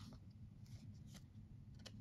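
Near silence with a few faint ticks of stiff foil trading cards being handled and slid against one another in the hand.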